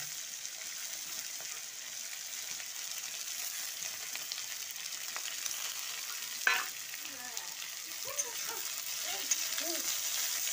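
Julienned potatoes frying in hot oil in a metal karai, a steady sizzle as a spatula stirs them. One sharp clack, the spatula against the pan, comes about six and a half seconds in.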